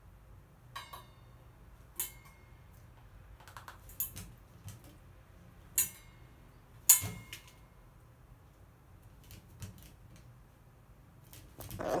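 A crow's beak pecking and knocking against a stainless steel food bowl: a handful of sharp, irregular clinks with a short metallic ring, the loudest about seven seconds in.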